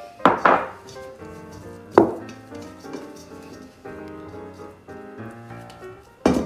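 Knocks of a spatula against a stainless steel mixing bowl as soft dough is scraped out onto a wooden counter: two quick knocks near the start and one sharp knock about two seconds in. Light background music plays throughout.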